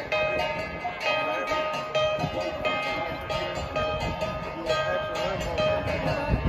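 Gongs struck in a steady repeating rhythm, each stroke leaving a sustained metallic ring, playing the beat for an Ifugao cultural dance.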